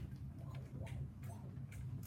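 Calculator keys being pressed: a few light, irregular clicks over a steady low room hum.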